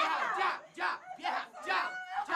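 Several voices shouting and crying out at once in loud, agitated bursts, the words not made out; the first cry rises sharply in pitch.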